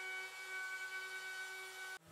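DeWalt compact plunge router running a small roundover bit along the edge of a red oak tabletop: a steady, fairly quiet high-pitched whine that cuts off abruptly at the end.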